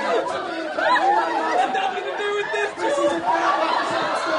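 A crowd of people talking and calling out over one another, many voices overlapping without a break.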